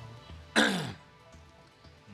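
A man clears his throat once about half a second in: a short, loud burst that drops in pitch. Quiet, steady background music runs underneath.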